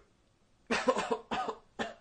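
A man coughing three times in quick succession, the coughs about half a second apart, beginning under a second in.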